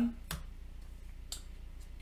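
Light clicks of cardboard board-game cards and tiles being set down on a table: a sharp tap, then a fainter one about a second later, over a steady low hum.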